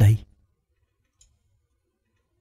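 A man's voice ends a spoken word in Vietnamese, then near silence with one faint click about a second in.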